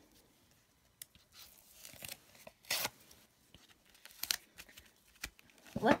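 A few brief rustles and tearing sounds of paper being handled and peeled, the loudest about three seconds in.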